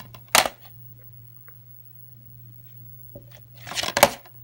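Sharp knock about a third of a second in, then a short clatter near the end, over a steady low hum: a small object being handled and knocked against a wooden table.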